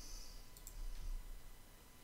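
Computer mouse clicking, a short sharp click about half a second in, over a faint low hum.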